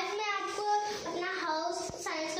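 A young girl's voice, in drawn-out phrases that glide up and down in pitch, with a brief knock near the end.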